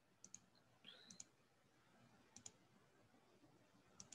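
Faint computer clicks in quick pairs, three double-clicks about a second apart, opening folders one after another.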